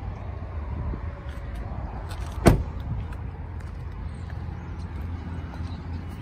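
A single sharp slam about two and a half seconds in: the 2020 Chevrolet Silverado crew cab's driver door being shut, over a steady low rumble.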